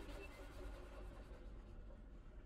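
String quartet playing very softly: faint, scratchy bow noise on the strings with a few weak held notes, over a steady low hum.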